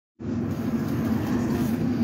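Inside a London bus: the engine running with a steady low hum and drone under a general rumble of the cabin.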